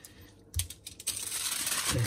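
Aluminium foil being folded and crimped by hand around a whole fish, crinkling and crackling: a few sharp crackles about half a second in, then continuous crinkling for the rest.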